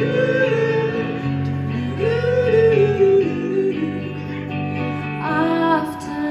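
Live music: an electric guitar with a group of female and male voices singing together in long held notes.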